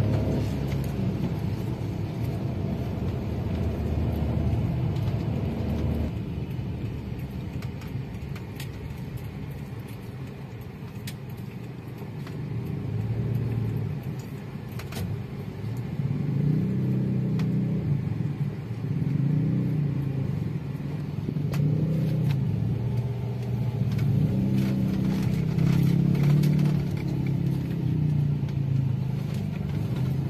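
Car engine and road noise heard from inside the cabin while driving in city traffic, swelling and easing with speed, with occasional light clicks and rattles.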